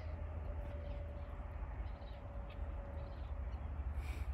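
Faint calls of distant birds over a steady low rumble.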